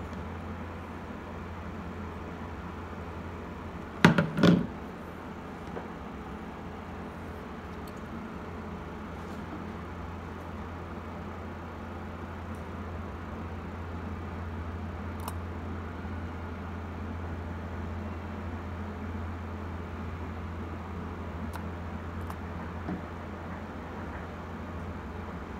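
Two sharp plastic knocks about four seconds in, from the opened plastic body of an electric kettle being handled, over a steady low hum.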